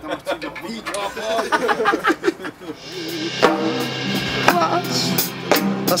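Live band playing, led by a drum kit with cymbals and a struck drum. The loud full playing comes in about three seconds in, after a quieter stretch of voices.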